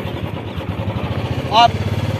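An engine running steadily with a rapid, even low beat, like a vehicle idling or rolling slowly along.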